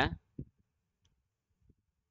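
A man's voice ends a spoken word right at the start, followed by a faint click about half a second in, then near silence.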